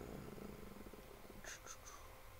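A man's drawn-out, creaky "uhh" of hesitation, then three quick, light clicks in a row about a second and a half in.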